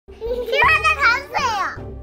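A young girl's high-pitched voice speaking excitedly, with music playing underneath.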